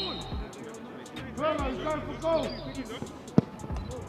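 A football struck once, a single sharp thump of the free kick near the end, over background music and faint voices.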